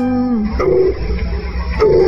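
Instrumental backing of a devotional song between sung lines: a held sung note ends about half a second in, then a plucked string figure plays over a pulsing low bass beat.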